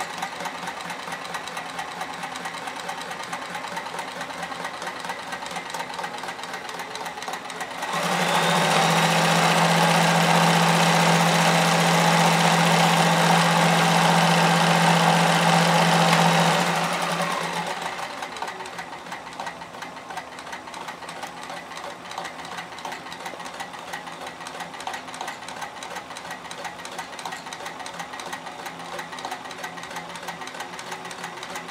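Kenmore 158.1040 portable sewing machine stitching through fabric. About eight seconds in it speeds up to a louder, faster run with a strong steady motor hum, then slows back down about eight seconds later to its earlier, quieter pace.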